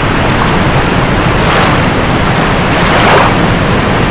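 Loud, steady rush of falling water from a waterfall, swelling slightly about a second and a half in and again near three seconds.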